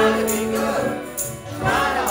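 Acoustic folk ensemble playing a song live: singing voices over strings, flute and guitar, with light percussion marking the beat. A sung note is held through the first half, and the music drops briefly in loudness shortly before the end.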